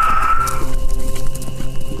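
Creature sound effect: the end of a monster's shriek, a high held cry that cuts off about half a second in, followed by rapid pounding footfalls of charging creatures, over background music.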